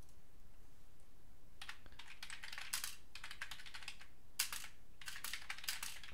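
Typing on a computer keyboard: after about a second and a half of quiet, fast runs of keystrokes with short pauses between them.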